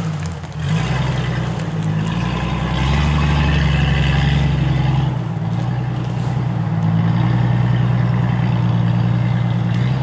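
Engines of lifted Jeeps running at low revs as they crawl along a dirt trail: a steady low drone that dips just after the start, then grows louder about three seconds in and again from about seven seconds on.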